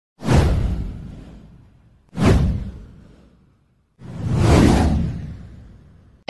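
Three whoosh sound effects from a title-card animation, about two seconds apart: the first two hit suddenly and fade away, the third swells up more slowly before fading.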